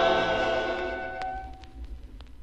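Closing held chord of a vocal group with orchestra on a 1950s LP recording, fading out over about a second and a half. Record surface noise with scattered clicks is left behind.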